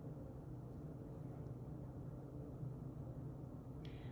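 Faint steady low hum of room tone, with no distinct sound from the work.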